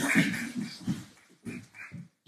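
Audience applause dying away over the first second, followed by a few short, faint sounds.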